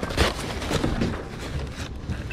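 Old, brittle brown wrapping paper crinkling and crackling as hands unwrap it from an object.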